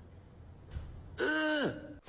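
A man's voice making a weird wordless vocal noise: one short call about half a second long, rising and then falling in pitch, past the middle after a near-quiet first second.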